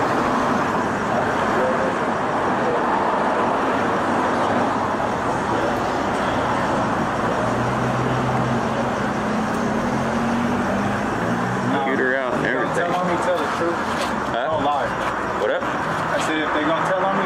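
Steady street traffic noise, with a vehicle engine heard for a few seconds around the middle, and indistinct voices near the end.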